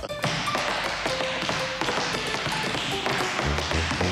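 Tap shoes tapping quick, irregular rhythms on a wooden dance floor, over background music.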